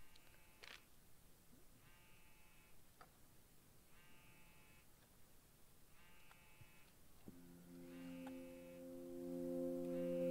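Faint soundtrack of the drama episode: a short tone repeating about every two seconds, then a sustained low music chord coming in about seven seconds in and swelling.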